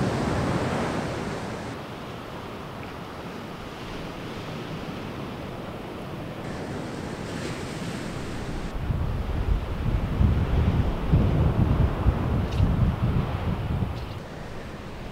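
Ocean surf washing onto a beach and wind, heard through a camera-top shotgun microphone in a furry "dead cat" windscreen. A wash of surf swells in the first second or so, and in the second half gusts of wind rumble low on the microphone.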